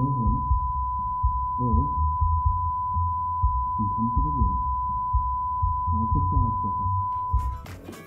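A steady high single-pitched tone, the shell-shocked ringing of a sound-design effect meant to put the listener inside a zoned-out character's head, held over muffled, low-pass-filtered male dialogue that sounds as if spoken on the other side of a wall. The tone cuts off shortly before the end.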